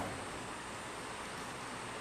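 Steady faint hiss of room tone, with no distinct sound event.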